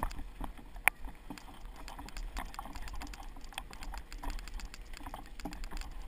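Mountain bike rolling over a rough, muddy trail, heard from a camera mounted on the rider or bike: a constant irregular clatter of small clicks and rattles over a steady low rumble. One sharper knock comes a little under a second in.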